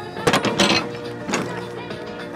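A few sharp metal clanks from a semi-trailer's rear-door lock handles and bars being unlatched, over background music.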